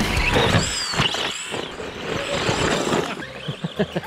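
Arrma Fury RC short-course truck's brushed electric motor whining as it drives, the pitch rising and falling about a second in.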